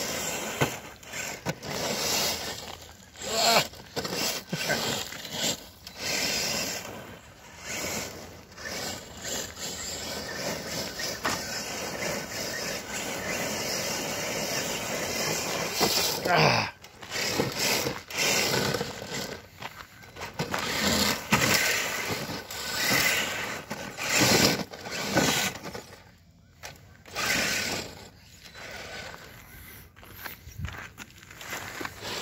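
Traxxas TRX-4 RC crawler driven in repeated throttle bursts on gravel: its electric motor and gears whine up and down while the tyres scrabble and throw gravel. There is a falling whine about halfway through.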